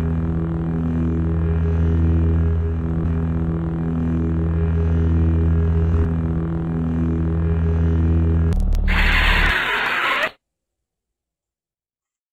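Sith lightsaber sound effect: a steady electric hum with a slow pulsing waver as the blade is held and swung. About eight and a half seconds in it swells into a louder, brighter surge that cuts off abruptly about ten seconds in, followed by silence.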